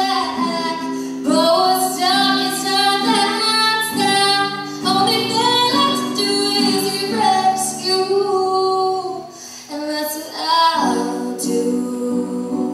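A woman singing a song in long, held notes over guitar accompaniment, with a short lull a little before the end.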